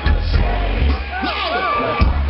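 Live rap performance through a festival PA: a heavy bass beat with rapped vocals over it.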